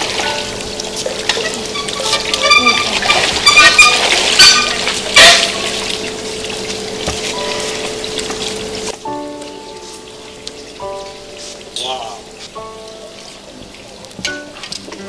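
Swimming-pool water splashing and sloshing as swimmers move through it, loudest in a couple of splashes around four to five seconds in, with a woman laughing and background music. About nine seconds in the water sound cuts off and only the music carries on.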